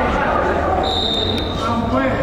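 A referee's whistle blown once: one steady high-pitched blast about a second long, starting a little before the middle. Players' voices run underneath.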